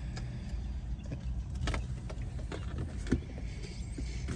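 Car power window being lowered, over a steady low rumble, with a few faint clicks.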